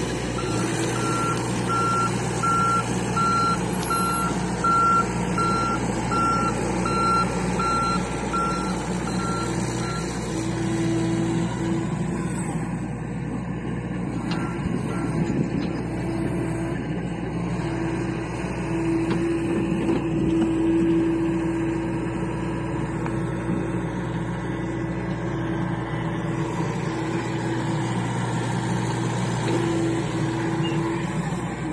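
John Deere 60G compact excavator working, its diesel engine running steadily under load. A travel alarm beeps about twice a second for the first ten seconds or so.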